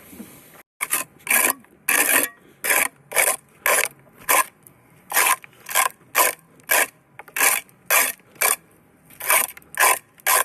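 A tool scraped in short, rhythmic strokes across a concrete strip footing, clearing loose dirt and debris off it: a harsh rasp about twice a second.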